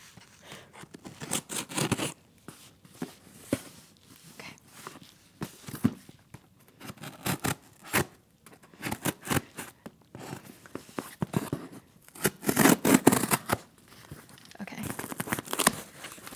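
Scissors cutting and slitting the paper tape on a cardboard box: irregular snips and blade scrapes against paper and cardboard. Louder tearing and scraping comes in two bursts near the end as the box is opened.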